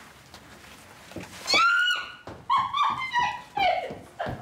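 High-pitched cries: one long, loud held cry about a second and a half in, then several shorter cries that fall in pitch.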